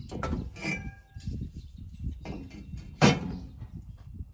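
Steel stand brackets being shifted and laid on a plywood tabletop: light knocks and scraping, then one sharp metallic clank about three seconds in.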